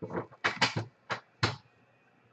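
Four short rustling snaps from trading cards and a foil wrapper being handled by hand.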